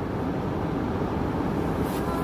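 Steady road and engine rumble heard inside a car's cabin while driving.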